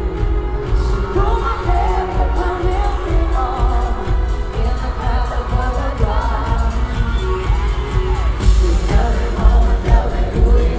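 A woman singing live into a handheld microphone over a bass-heavy electronic dance pop track, with wavering, drawn-out vocal lines.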